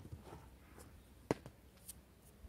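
A few short knocks and clicks of plant pots and tools being handled on a plastic garden table, the loudest knock just past halfway and a lighter, higher click near the end.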